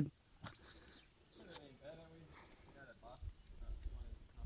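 Faint, distant talking with a few soft clicks, and a low rumble on the microphone near the end.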